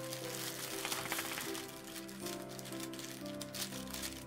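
Soft background music of held notes, with faint crackling of a crinkle-ball cat toy being handled to remove its tag.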